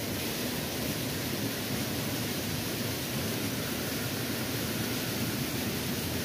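A steady, even hiss of outdoor background noise with no distinct events.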